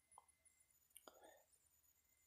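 Near silence: room tone, with two faint light ticks, one shortly after the start and one about a second in.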